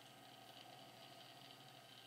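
Near silence: faint steady room tone with a light hiss.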